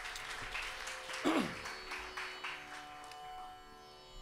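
Quiet lull after a Carnatic ensemble piece ends: faint scattered clapping and lingering instrument tones, with one short falling pitch slide about a second in.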